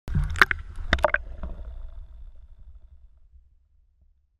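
Water splashing and sloshing against a camera at the water surface: several sharp splashes in the first second or so, then a low watery rumble that fades out.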